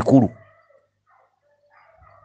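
A man's voice finishing a word at the very start, then a pause with only faint, brief pitched sounds in the background.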